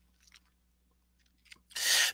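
A pause in a man's speech: near silence with a couple of faint clicks, then a short breathy intake of breath near the end.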